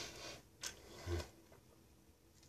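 A man drinking from a small bottle: a breathy exhale through the nose, then a small click and a swallow about a second in.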